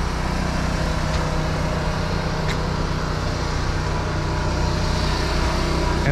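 Steady low hum of an idling engine, even and unchanging throughout.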